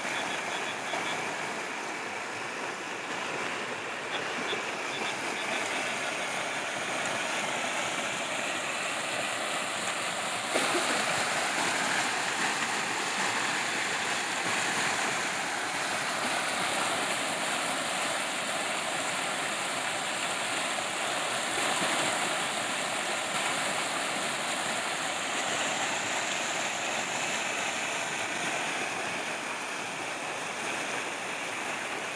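Muddy floodwater rushing and churning as it pours over a small culvert in a steady wash of noise, a little louder from about ten seconds in.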